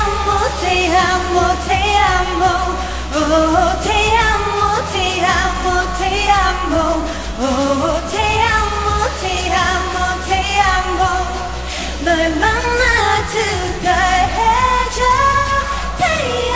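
A female K-pop singer's live vocals with the instrumental backing track removed, singing a continuous melodic line that slides between notes. A low leftover rumble from the stripped-out backing runs underneath.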